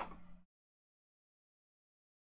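Near silence: a faint trailing sound cuts off about half a second in, leaving complete silence.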